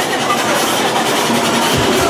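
Loud, dense rumbling noise of a haunted-maze soundscape played over speakers, with a low thud near the end.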